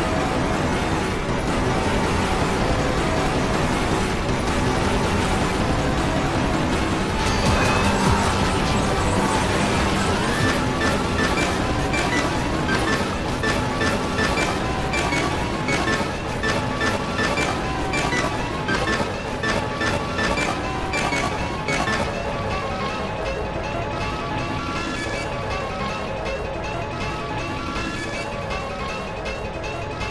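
A dense, cluttered mix of music and sound effects from many children's TV clips playing over each other, with a regular beat of sharp hits standing out past the middle.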